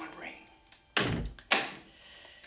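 A wooden door being shut: two heavy thunks about half a second apart, the first one deeper.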